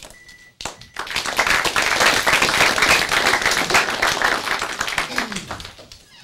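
Audience applauding: many hands clapping, starting about a second in and dying away near the end.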